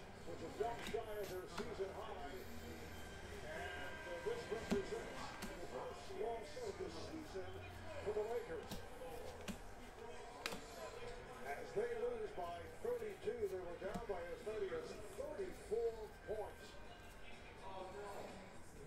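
An indistinct background voice over quiet music, with a few light clicks as glossy trading cards are flipped through by hand.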